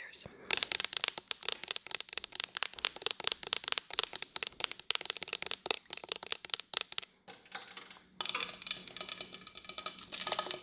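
Rapid fingernail tapping with long acrylic nails on decorations and hard surfaces, many quick clicks a second. After a short lull near seven seconds it turns into a denser, continuous scratching.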